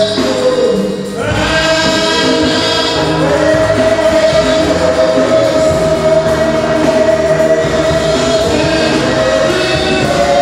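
Congregation singing a Ghanaian gospel praise song together. There is a brief dip about a second in, then one long held note that lasts until near the end.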